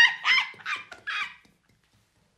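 A man and a woman laughing hard together in rhythmic bursts of about three to four a second, dying away about a second and a half in.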